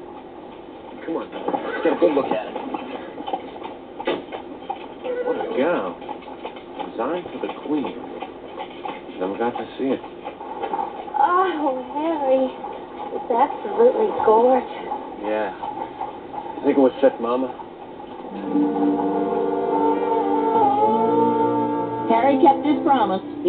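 Voices with wavering, sliding pitch through most of the stretch, then a sustained musical chord starting about three-quarters of the way in.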